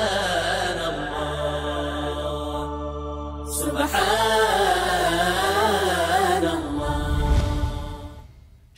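Chanted vocal music: a melodic voice with wavering, ornamented lines over a low sustained drone. The voice breaks off briefly a few seconds in, then resumes, and the music fades out near the end.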